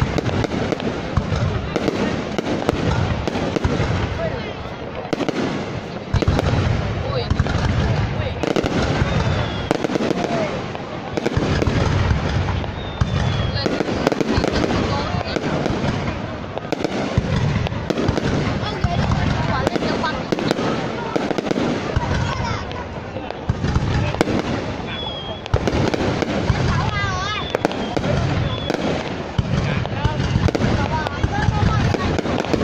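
An aerial fireworks display: shells launching and bursting in quick succession without a break, with crackling in between.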